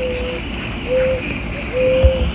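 Mourning dove cooing: three soft, level coos about a second apart, the last part of its call, over a low wind rumble on the microphone.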